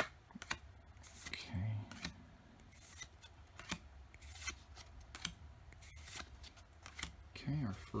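Trading cards being shuffled through by hand one at a time: soft slides of card stock against card stock and small snaps as each card is moved to the back of the stack.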